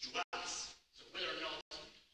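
A man speaking, giving a talk in short phrases with brief pauses. Twice the sound cuts out completely for an instant.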